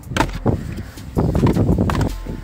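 Hands working the plastic fuse-box cover on the end of a car dashboard: a couple of sharp plastic clicks, then a louder stretch of scraping and crackling about a second in.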